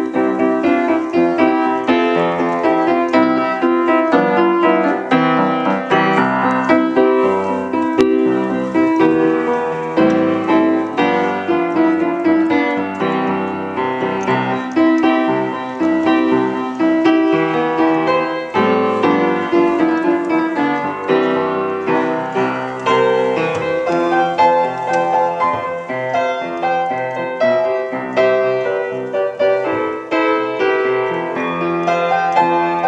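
1897 Steinway upright piano played with both hands, chords and melody together, without a break.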